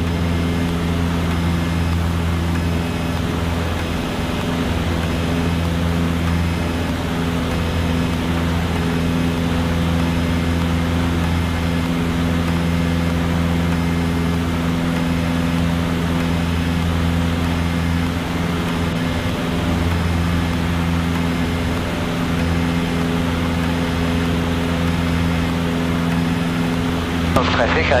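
Cessna 152's four-cylinder Lycoming O-235 engine and propeller at takeoff power, heard inside the cabin as a steady low drone through the takeoff roll, liftoff and initial climb.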